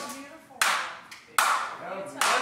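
Two sharp hand claps, a little under a second apart.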